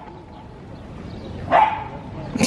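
A small terrier gives one short bark about one and a half seconds in.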